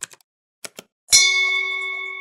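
Sound effects for an animated subscribe button: a few short mouse-click ticks, then a little past a second in a bright bell chime whose ringing tones fade slowly.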